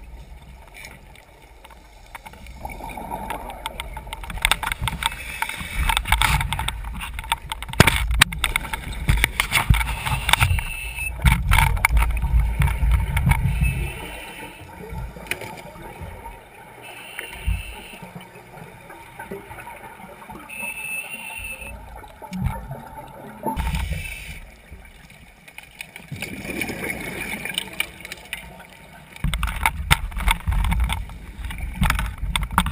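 Scuba breathing heard underwater: exhaled bubbles from a regulator rumble and gurgle past the microphone in long bursts, with quieter stretches holding short hissing inhalations. A few sharp clicks come in the middle of the louder stretch.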